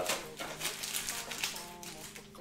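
Soft background music with faint rustling and light clicks as a trading card is handled and slipped into a plastic penny sleeve.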